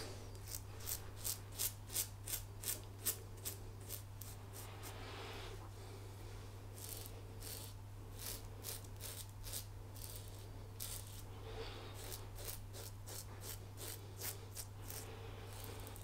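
Muhle R108 double-edge safety razor cutting through lathered stubble on the neck: faint, short scraping strokes, a quick run of several in the first few seconds, then a pause, then more strokes at a slower, uneven pace.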